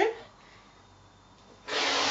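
Rotary cutter blade rolling along an acrylic ruler through four layers of fabric on a cutting mat: one quick cut about half a second long near the end.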